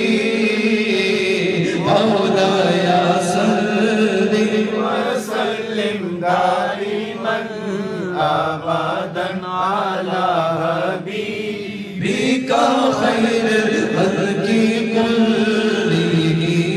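A male naat reciter sings into a microphone, holding long notes with wavering ornaments in the middle of the phrase. The voice dips briefly about twelve seconds in, then goes on.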